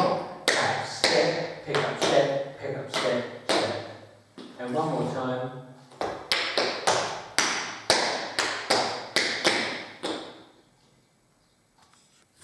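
Metal taps of tap shoes striking a tiled floor in a slow, even run of heel-shuffle, drop, tap and step sounds, about two to three taps a second. They come in two phrases separated by a short break, and stop about ten seconds in.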